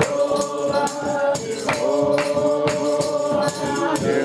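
A congregation singing a gospel praise song together, backed by a steady hand-percussion beat of about two or three strokes a second.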